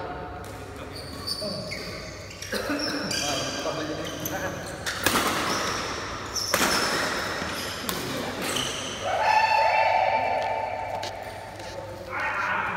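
Sports shoes squeaking on a badminton court floor in many short, high-pitched chirps, with a few sharp racket hits on the shuttlecock and players' voices.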